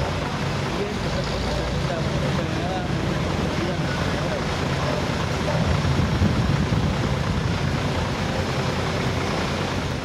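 Steady outdoor background rumble with faint, indistinct voices.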